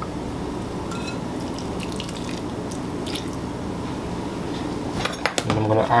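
Cream pouring steadily from a saucepan into a glass bowl of crushed potatoes.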